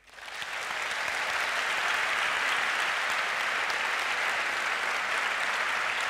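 Audience applauding after a talk: the clapping swells over about the first second, then holds steady and dense.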